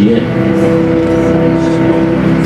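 A keyboard holding one sustained chord, steady and unchanging, with no melody or beat: a pad played under prayer.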